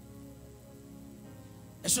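Soft, steady backing chords held on a keyboard, with no beat. Near the end a man's voice cuts in loudly through the microphone.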